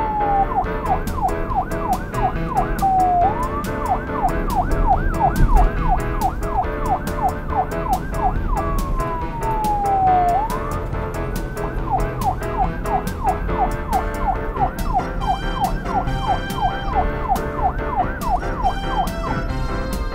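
Police siren sound effect over background music with a steady beat. The siren alternates long falling sweeps with fast up-and-down yelps.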